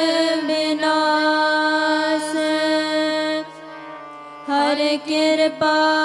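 Kirtan in Sri Raag: female voices hold long, slow sung notes over steady harmonium tones and a low drone. A little past halfway the sound drops away briefly, then the voice comes back with a wavering ornament.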